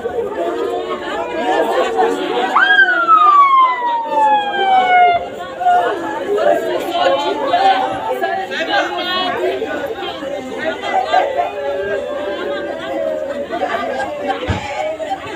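A crowd of women wailing and crying over one another in mourning. About three seconds in, one voice lets out a long, high cry that falls steadily in pitch.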